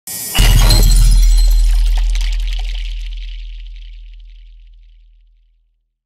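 Intro sound effect: a sudden crash with bright, glittering highs about half a second in, over a deep boom that fades away slowly over about five seconds.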